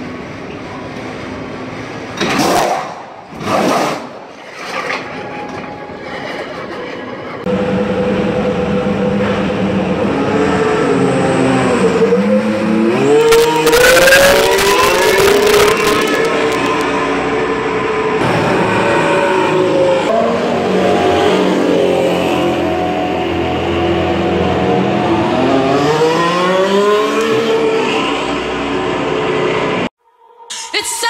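Formula One cars in a pit lane. Three short loud bursts come first, then from about seven seconds in a steady engine note that climbs and falls in pitch as the engines rev, loudest near the middle.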